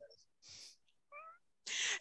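One short, faint, high-pitched call from a small animal, about a second in.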